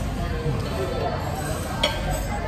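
Table knife and fork scraping and clinking against an iron sizzle plate while a steak is cut, with one sharp clink near the end.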